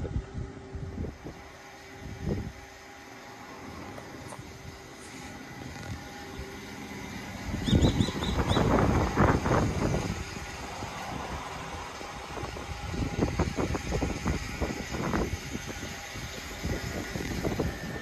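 Wind buffeting the microphone in irregular gusts, a low uneven rumble that is strongest from about eight to ten seconds in.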